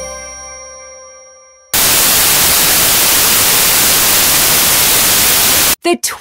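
The last held notes of a song's music fade out, then a loud, even burst of white-noise static cuts in abruptly and holds for about four seconds before stopping just as suddenly.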